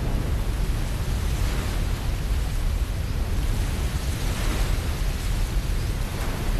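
Steady roar of a large waterfall, masses of white water pouring over rocks, with a deep low rumble beneath the rushing hiss.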